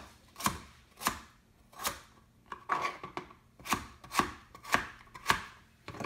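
Kitchen knife slicing a cucumber on a plastic cutting board. Each cut through the cucumber ends in a sharp knock on the board, about eight cuts at an uneven pace of roughly one every half to three-quarters of a second.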